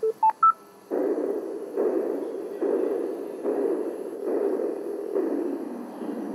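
Electronic audio from a sound-art installation: three short beeps stepping up in pitch, then a muffled, narrow-band hiss that comes in even pulses a little under once a second, each starting sharply and fading away.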